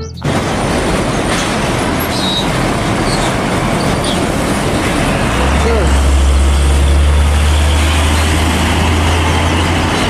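Heavy car-carrier trucks driving past on a road: steady engine and tyre noise, with a deep low rumble that sets in about halfway through as a truck comes close.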